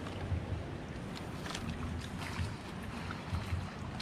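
Shallow water sloshing and splashing as a person wades through muddy swamp water, with irregular low rumbling and a few faint clicks.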